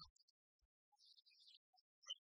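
Near silence: faint room tone with a few scattered faint sounds.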